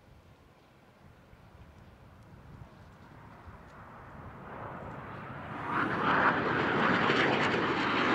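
Jet noise of the Boom XB-1's three GE J85 engines on takeoff climb-out, swelling from faint to loud over the first six seconds and then staying loud.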